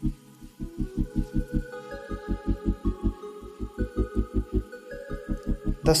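Background music: a fast, even low pulse under sustained held chords that change every second or so.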